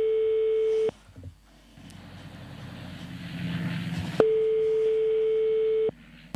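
Telephone ringback tone over the phone line as an outgoing call rings at the far end: a steady mid-pitched tone that ends just under a second in, then after a pause of about three seconds sounds again for about a second and a half. Faint low murmur in the pause.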